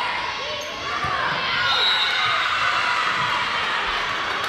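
Volleyball rally on a gym court with the ball being struck, then cheering and shouting from players and spectators that swells about a second in as the point is won.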